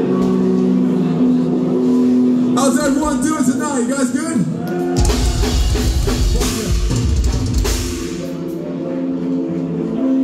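Live band with electric guitars, bass and drum kit: held guitar notes ring, a voice shouts over them, then about five seconds in the full band hits with drums and distorted guitars for about three seconds before dropping back to ringing guitar notes.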